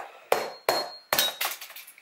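A meat cleaver chopping down on cooked crab legs on a cutting board: a quick series of about five sharp knocks, some leaving a short metallic ring.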